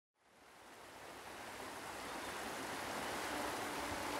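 Steady rushing of a flowing river, fading in slowly from silence and growing louder, with a faint low held tone coming in near the end.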